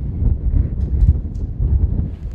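Wind buffeting an outdoor microphone: an uneven low rumble that swells and drops, with a few faint clicks.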